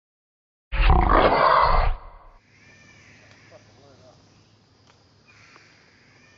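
A loud, gruff roar-like sound lasting about a second, starting abruptly out of silence. After it, only faint background sounds.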